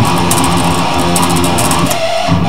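Electric guitar playing a fast, low metal riff, picked rapidly near the bridge.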